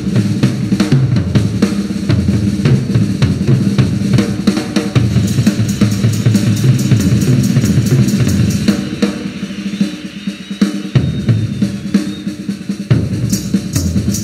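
Live rock drum solo on a full drum kit: fast rolls around the toms and bass drum, cut through by sharp snare strokes. It eases off briefly about ten seconds in, then picks up again, with cymbals coming in near the end.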